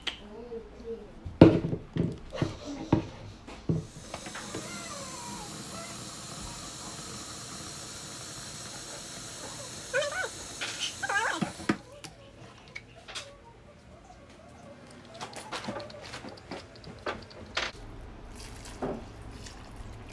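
A kitchen tap running into a red plastic watering can, refilling it, as a steady rush of water for about seven seconds before the tap shuts off. A few knocks and clatters come before it and after it.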